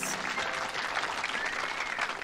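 Audience applauding, a steady clapping that fills the gap between two prize announcements at a pageant.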